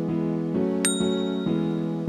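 Intro music with sustained chords restruck about every half second, and a single short, high bell ding about a second in: a notification-bell sound effect from a subscribe animation.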